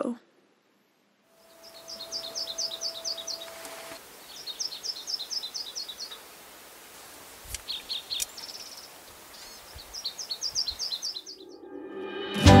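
A small songbird singing outdoors against a light background hiss, starting about a second in: three phrases, each a rapid run of about eight high, evenly spaced notes lasting around two seconds, with a short cluster of separate calls between the second and third.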